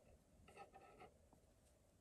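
Near silence, with faint rustling of hands handling crocheted yarn petals around a wire stem for about half a second, starting about half a second in.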